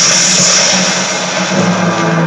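Thunder crash sound effect from a film soundtrack, played through a television's speaker: a loud, steady rolling rumble, with low sustained musical tones coming up under it about one and a half seconds in.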